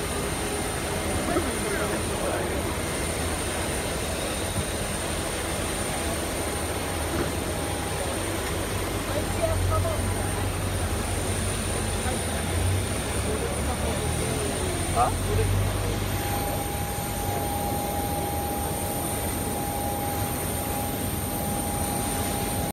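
Jet-airliner noise on an airport apron: a steady high whine over a low rumble that swells in the middle, with a lower steady tone joining about two-thirds through. Passengers' voices murmur in the background.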